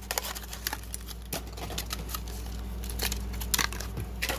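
Clear plastic blister packaging crinkling and crackling in the hands as a die-cast toy car is worked out of it, an irregular string of small clicks throughout.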